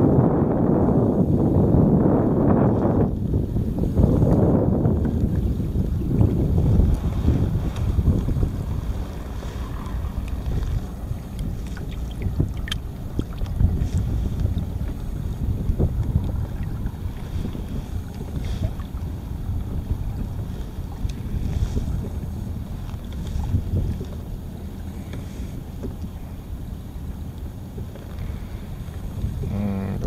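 Wind buffeting the microphone over sea water lapping against a kayak's hull on choppy water, loudest in the first several seconds and then steadier and quieter.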